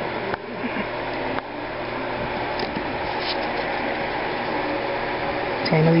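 Steady background hiss, an even whooshing noise, with two soft clicks in the first second and a half.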